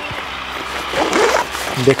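A nylon tent's door zipper being pulled open by hand, with the tent fabric rustling.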